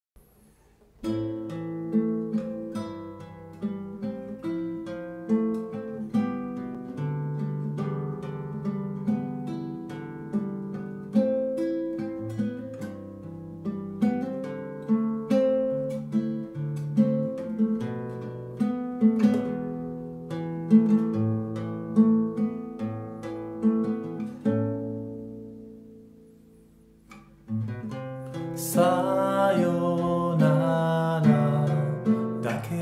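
Nylon-string classical guitar with a capo, fingerpicked as a solo introduction, with notes plucked about twice a second. Near the end a chord is left to ring and fades almost to silence, then the playing comes back louder.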